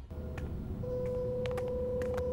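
Quiet, tense cartoon underscore: a low rumble with one steady held note that comes in just under a second in, and a few faint ticks.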